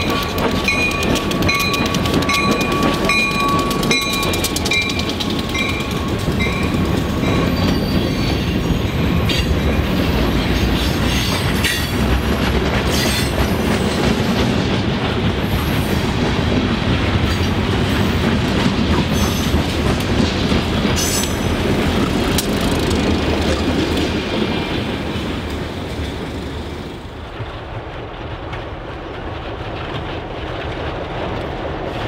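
Providence & Worcester diesel freight train passing. A held high tone, pulsing, sounds for the first few seconds over the engine. Then the freight cars rumble past, with many sharp clicks and clacks from the wheels, fading near the end.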